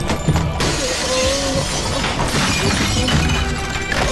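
Continuous crashing and shattering of breaking objects, with debris scattering, over a loud music score.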